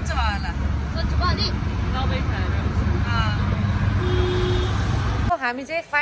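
Steady low engine and road rumble inside a moving auto-rickshaw, with voices over it. The rumble cuts off suddenly about five seconds in.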